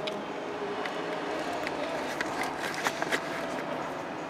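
Steady low background noise with scattered light clicks and taps from handling the camera and the plastic bulb socket.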